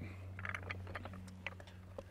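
Faint scattered clicks and light metal knocks from a three-foot pipe wrench on a treehouse attachment bolt as the wrench is re-set and the bolt is turned into the tree trunk, over a low steady hum.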